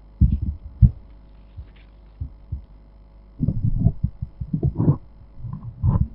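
Irregular dull thumps and bumps close to the microphone, like handling noise on a desk or microphone. They come in a cluster just after the start and a denser run over the last couple of seconds, over a steady electrical hum.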